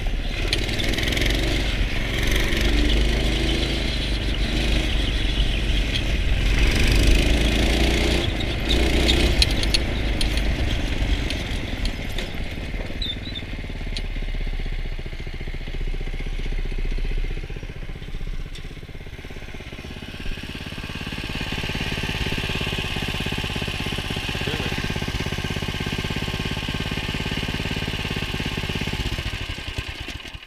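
Go-kart's small 5–6 hp single-cylinder petrol engine running under way, rising and falling with the throttle for the first dozen seconds, then lower and steadier, and cutting off right at the end. It is not running well.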